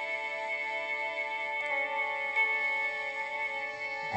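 Teenage Engineering OP-1 synthesizer playing held chords from a sample of a singing voice, moving to a new chord a little under halfway through.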